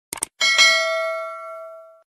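Cursor-click sound effect, a quick cluster of clicks, followed about half a second in by a notification-bell chime sound effect that rings out, fades, and cuts off abruptly at the end.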